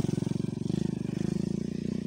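Motorcycle engine idling steadily, with an even, rapid pulse.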